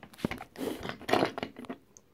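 Wooden toy train coaches handled and pushed on a wooden track: a sharp click, then two short scraping rattles.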